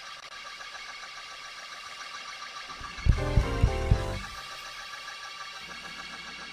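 Hammond-style drawbar organ playing held gospel chords in the upper register. About three seconds in, a louder burst of low chord stabs lasts about a second.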